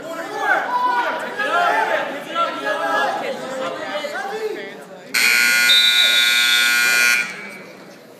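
Spectators shouting in a large gym, then about five seconds in a scoreboard buzzer sounds, loud and steady for about two seconds, and cuts off: the period clock has run out.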